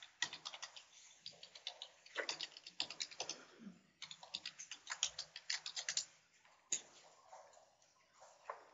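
Computer keyboard typing: quick runs of key clicks that stop about six seconds in, followed by a single click shortly after.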